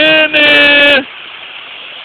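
A man's voice holding a long sung note that cuts off about a second in, leaving the steady rush of a waterfall.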